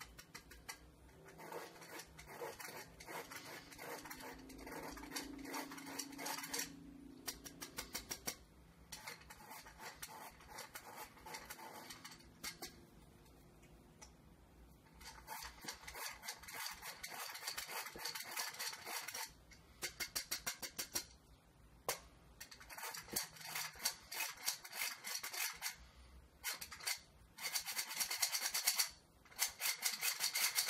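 Hand-crank metal flour sifter being turned, sifting ground almonds and powdered sugar: a fast rattling click of the crank mechanism, in spells with short pauses, loudest near the end.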